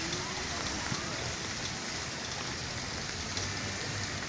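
Rain falling steadily on a flooded street, an even hiss of rain on water and pavement.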